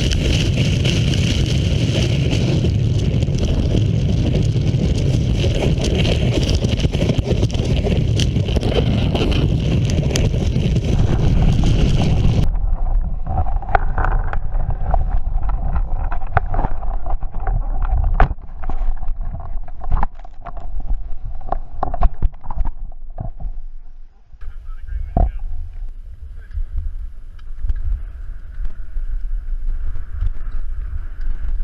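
Wind rushing over a body-mounted camera's microphone and a snowboard's base and edges sliding and carving on packed snow, a loud, steady rush. About twelve seconds in it changes abruptly to a quieter stretch of scraping and clicking on snow.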